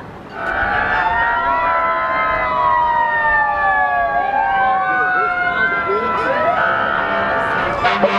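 Police car sirens from sheriff's patrol vehicles at the head of a parade, several wails overlapping, each tone sliding up and down. They start about half a second in and are the loudest sound.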